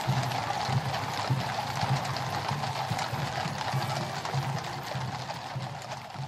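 Many shod horses' hooves clip-clopping on wet tarmac as a mounted cavalry column passes, a dense, overlapping patter that begins to fade near the end.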